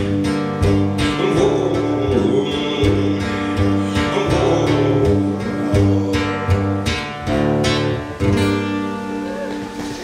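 Live guitar playing: a solo performer strumming chords in a song, easing off a little near the end.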